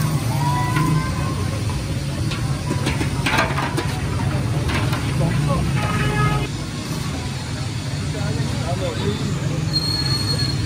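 Metal milk pots being spun by hand in a tray of iced water, sloshing and splashing, with a few sharp clinks of metal partway through and a brief ringing tone about six seconds in, over a steady low hum.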